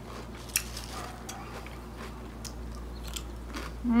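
A person chewing ridged Ruffles potato chips with a few scattered crunches, the sharpest about half a second in.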